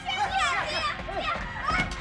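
Several people shouting over one another in alarm, crying out that there is a fire, with dramatic background music under the voices.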